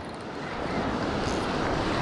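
Small surf waves washing over the shallows with wind on the microphone: a steady rush of noise that grows a little louder over the first second.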